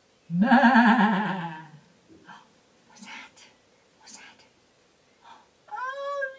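A long, wavering 'baaa' lamb bleat imitated in a woman's voice, falling in pitch and lasting about a second and a half. Faint rustles and murmurs follow, and near the end her voice rises in an exclamation.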